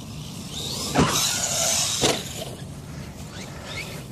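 JLB Cheetah RC buggy's brushless electric motor whining as it speeds across grass, with two sharp knocks about a second apart as it hits the ramp and lands.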